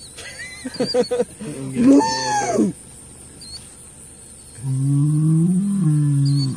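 Angry bull bellowing: a loud call about two seconds in whose pitch rises and then falls, then a long, low, drawn-out bellow that starts near the end.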